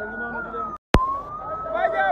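A siren holding a high tone that sags, breaks off for an instant with a click about a second in, then rises back up, over a crowd's voices.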